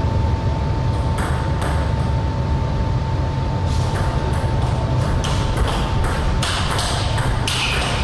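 Table tennis ball clicking off rackets and the table in a rally, about two or three hits a second from about four seconds in, after two single clicks earlier on. A steady low hum and a thin steady tone run underneath.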